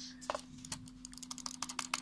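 Glorious Model O gaming mouse clicking under the finger: a quick run of sharp clicks, several a second, getting faster toward the end.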